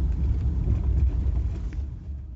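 Low, steady rumble of a car's interior, with no speech, easing slightly toward the end.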